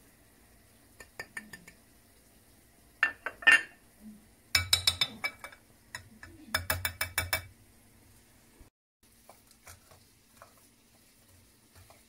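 Kitchen utensils clinking and knocking against a glass mixing bowl and small dishes as seasoning is added: a few sharp knocks about three seconds in, then two quick runs of rapid taps around five and seven seconds in, with faint clicks after.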